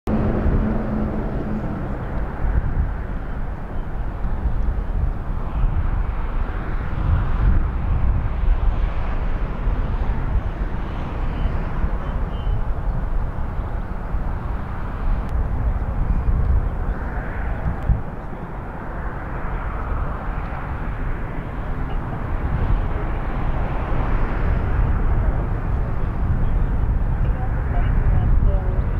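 Steady rumble of freeway traffic, swelling and easing as vehicles pass.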